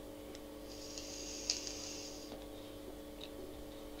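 A draw on a mouth-to-lung vape, an Innokin Jem tank with a 1.6 ohm coil fired at 11 watts: a faint hiss of air pulled through the tank for about a second and a half.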